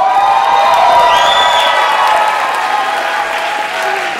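Audience applauding and cheering, many voices yelling over the clapping, with one high whoop about a second in.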